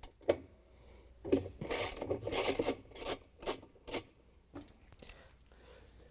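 A hand ratchet with a 7/16-inch socket and extension clicking in about half a dozen short bursts, mostly between one and four seconds in, as it loosens the agitator bolt of a top-load washer.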